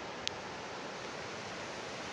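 Steady rush of shallow river water running over a stony riverbed, with one brief click about a quarter of a second in.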